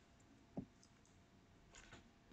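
Near silence: room tone, with one faint click about half a second in and a fainter tick near the end.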